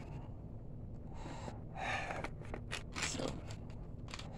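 Faint breathing from a man pausing between sentences, with a breath drawn in about two seconds in, over a low steady room hum.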